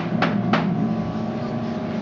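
Upright piano chord held and ringing out on the sustain pedal, with three sharp clicks in the first half-second.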